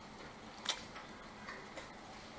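Faint room tone with a few small ticks from a sheet of paper being handled. The clearest tick comes about two-thirds of a second in, and two weaker ones come near the end.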